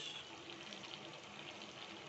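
Swordfish steaks in tomato sauce simmering in a frying pan: a faint, steady sizzle.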